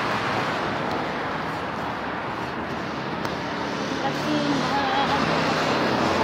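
Steady road traffic noise from passing vehicles, with faint voices in the background.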